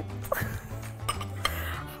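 A few light clinks and scrapes of a spatula and a small glass bowl against a nonstick pan as a cream sauce is stirred, over background music with steady low notes.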